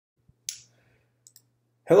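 A single sharp click about half a second in, followed by two faint ticks, then a man's voice starting to speak right at the end.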